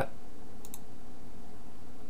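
A quick pair of computer-mouse clicks about two-thirds of a second in, over a steady low room hum.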